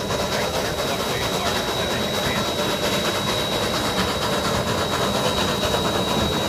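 Three-truck Shay geared steam locomotive #7 working hard upgrade. Its rapid, even exhaust beat mixes with the rumble and clatter of the train, heard from an open car close behind it, over a steady high whine.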